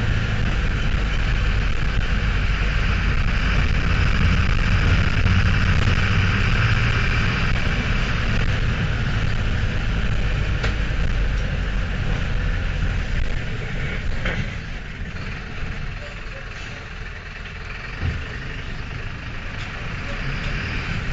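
Mercedes-Benz LO-914 minibus running on the road, heard from inside the cabin: its OM904 turbodiesel gives a low rumble that eases off and gets quieter for a few seconds after the middle. There is a single knock near the end.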